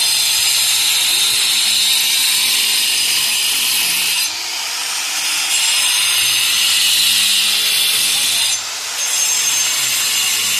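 A loud, steady high-pitched hiss that dips briefly twice, with faint voices underneath.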